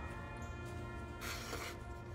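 A knife blade slicing through a sheet of paper, a short rasping hiss about a second in, over steady background music. The blade is a Ka-Bar Potbelly's 1095 Cro-Van edge, chewed up with dents and chips, being paper-tested.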